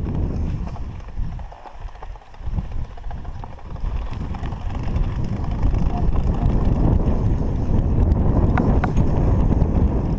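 MXR DS 29er aluminium mountain bike rolling over rough grass and a sandy dirt road, heard from a handlebar-mounted camera: an uneven rumble and rattle from the tyres and frame, with a few sharp clicks. It grows louder and steadier about halfway through.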